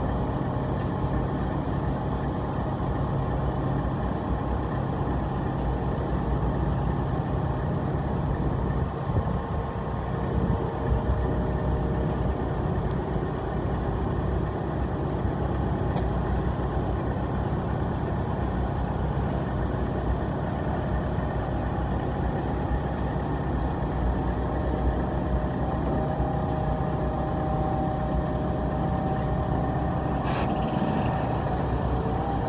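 JLG telehandler's diesel engine running steadily as its boom lifts a car.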